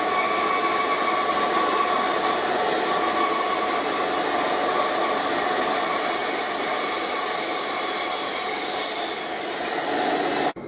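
Scheppach bandsaw running steadily with its dust extraction while a mandolin neck is fed past the blade, trimming the wood either side of the fretboard. The machine noise is continuous and even.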